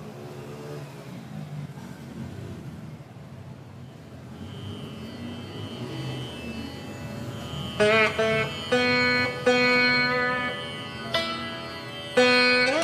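Indian classical-style instrumental background music: a soft, low sustained backdrop, then from about two-thirds of the way in, loud plucked string notes with sliding pitch bends.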